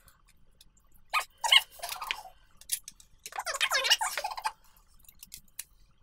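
A woman's voice in two short, high-pitched, unintelligible stretches, about a second in and again near the middle, with quiet between and after.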